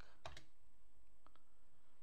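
A few sharp clicks of computer keyboard keys in the first half-second as a typed command is finished and entered, then two faint ticks about a second later over low room hiss.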